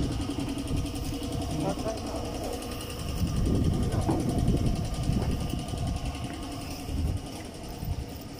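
A motor running steadily, a low rumble with a few steady tones that swells for a couple of seconds in the middle.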